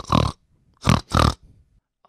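Pigs grunting: two pairs of short grunts, the second pair about a second after the first.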